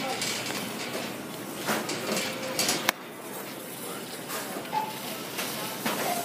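Store background noise with faint chatter and phone handling rustle, and a sharp click about halfway through, after which it is a little quieter.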